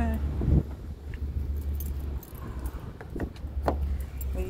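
Keys jingling in hand while walking, with a few sharp clicks and a steady low rumble on the microphone.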